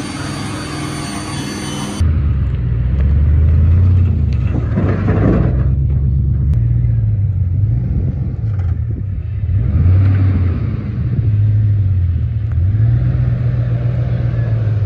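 A cordless drill with a paint-stripping wheel whines for about two seconds against a truck door. Then, abruptly, the loud, deep running of a 1999 Chevy Silverado's 4.8-litre V8 takes over, its pitch stepping up and down several times as it is revved.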